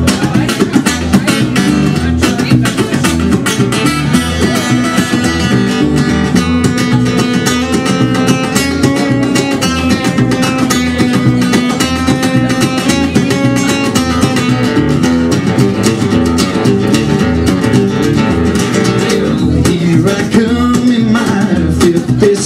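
Steel-string acoustic guitar strummed in a steady, driving rhythm: the instrumental intro of a country song, before the vocal comes in.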